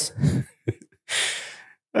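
A man sighing into a handheld microphone: a breathy exhale lasting under a second that fades out, just after the end of a spoken phrase.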